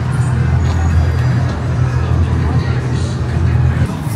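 Loud funfair din by a spinning teacup ride: a steady deep hum with music and voices over it. The hum drops away at the very end.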